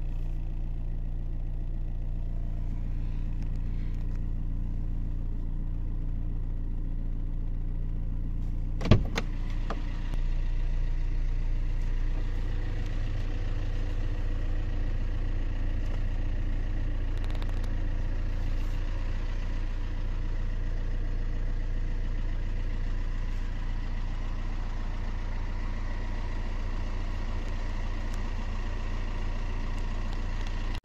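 A car engine idling steadily, heard from inside the cabin of a Fiat Grande Punto. A single sharp knock comes about nine seconds in, and the hum gets slightly louder a second later.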